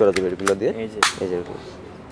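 Metal toy BB pistol being handled: two light clicks, then one loud, sharp metallic snap about a second in, as the spring-loaded slide is racked and let go.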